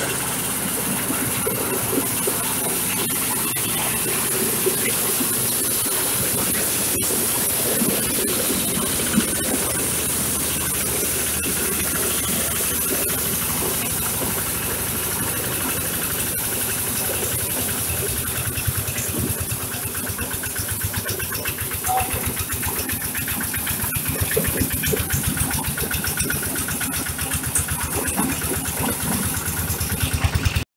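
Corn sheller for unhusked cobs running under load, driven by a single-cylinder diesel engine: a steady engine drone mixed with the noise of cobs and husks being threshed. The engine beat grows more uneven from about two-thirds of the way through.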